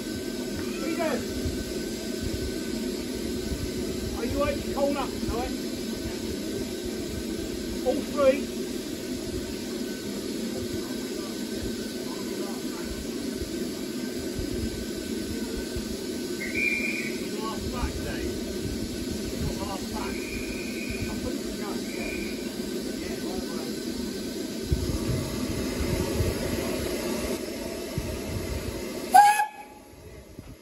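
Steam locomotive standing at a platform with a steady hiss of escaping steam, faint voices behind it. A few short high tones sound about halfway through, and near the end a sharp loud knock comes, after which the hiss cuts off.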